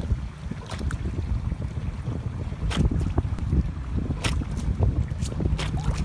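Water spurting and splashing up through a pool skimmer lid as a French bulldog snaps and laps at it, with several sharp splashes over a low steady rumble.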